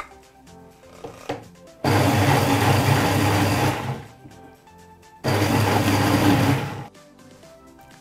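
Countertop blender with a plastic jug running in two bursts of about two seconds each, puréeing cooked tomatoes, onions and spices into a smooth pomodoro sauce. Before it starts there are a few light knocks as the sauce is scraped in and the lid is put on.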